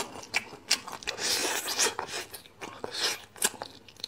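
Close-miked eating: marrow being sucked and slurped from a braised bone in several wet, hissing slurps, with sharp lip smacks and clicks between them.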